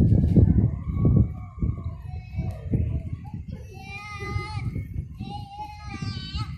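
Young children's voices calling out in high, sing-song tones, the clearest about four seconds in and again near the end, over a heavy low rumble.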